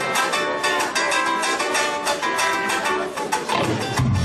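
Live band music: fast, rhythmic strummed and picked guitars. A deep bass part comes in just before the end.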